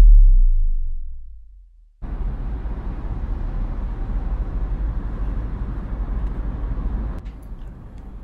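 A deep tone sliding down in pitch fades away over the first two seconds. Then the steady low rumble of a car driving, heard from inside the cabin, starts suddenly and drops somewhat in level about seven seconds in.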